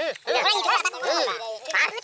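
Several people's voices chattering and exclaiming close to the microphone, some of it nasal and quack-like.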